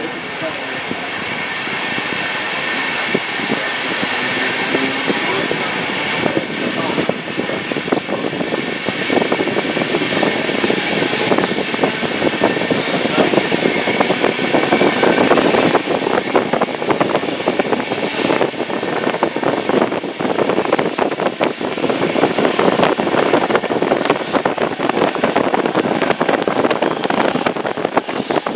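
Running noise heard from inside a DB Regio regional train as it pulls away from a station: wheels on the rails and the train's rumble grow steadily louder over the first fifteen seconds as it picks up speed, then hold at speed with a continuous rattle.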